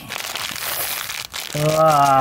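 Thin plastic bag crinkling as dead mealworms are shaken out of it onto carpet. A person's voice comes in near the end.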